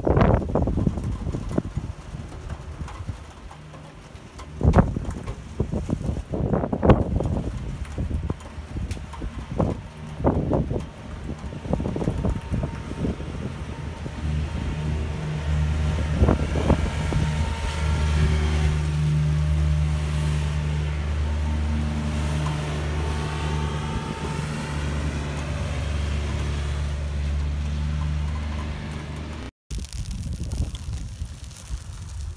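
A motor vehicle engine running with a steady low hum that sets in about halfway through. Before it comes a run of scattered knocks and thumps.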